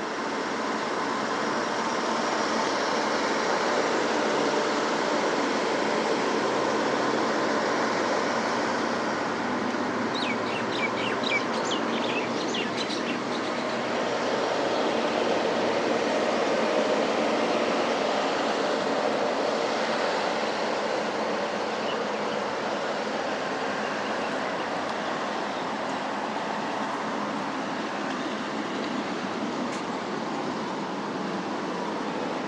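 Steady city street noise of traffic passing on a multi-lane road. About ten seconds in, a bird gives a quick run of high chirps.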